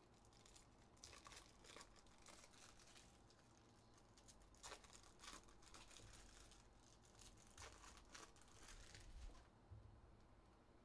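Faint crinkling and rustling of foil trading-card pack wrappers being handled, with a few sharp crackles scattered through.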